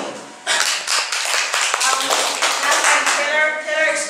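A small audience clapping, starting about half a second in and dying away about three seconds in, as a woman's voice begins speaking.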